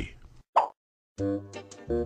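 A short cartoon pop sound effect, then held notes of background music start a little past the middle.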